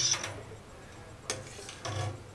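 A long-handled wire whisk knocking against a metal pot of cheese curds as it is handled: two short light clicks, about a second and a half in and near the end.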